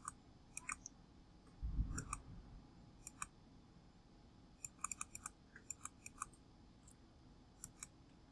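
Faint computer mouse clicks, some single and some in quick runs of three or four, with a soft low thump about two seconds in.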